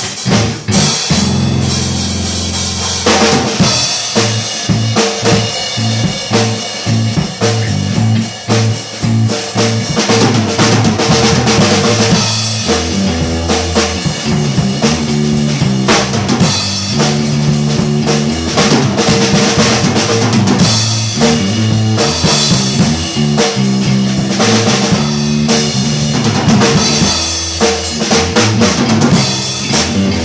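Drum kit and electric bass guitar playing together: a steady drum beat over a bass line that holds one low note for the first few seconds, then moves from note to note.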